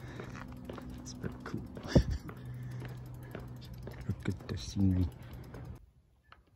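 A bicycle being ridden on a paved trail, with clicking and rattling from the bike over a steady hum and a sharp knock about two seconds in. A short vocal sound comes near the end, and the sound drops almost to silence just before the end.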